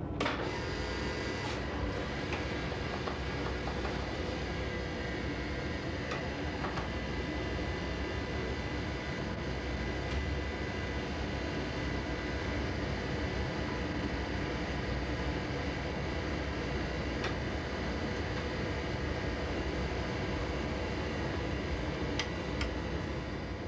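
Cinema film projector running in its projection room: a steady mechanical whirr and hum with a few faint clicks.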